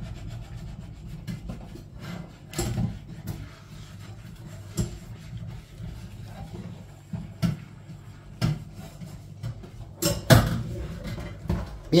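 A fork pressing and scraping sticky almond turrón paste into a paper-lined carton mould, with scattered light knocks and taps, the loudest a few knocks near the end, over a low steady rumble.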